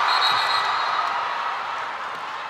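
Arena crowd cheering after a spike lands for a point, loudest at the start and slowly dying down.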